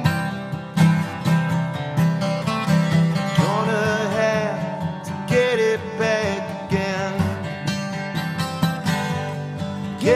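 Live band song: acoustic guitars strummed in a steady rhythm, with a man singing over them.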